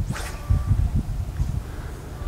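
Wind buffeting the microphone as a steady low rumble, with a short soft hiss near the start.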